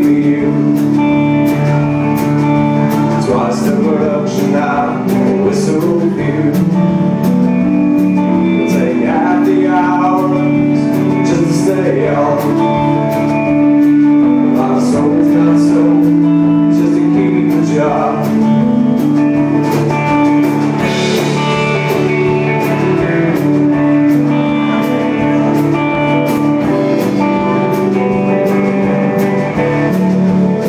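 Live band playing a folk-rock song: electric guitars over a drum kit, with cymbal hits keeping a steady beat.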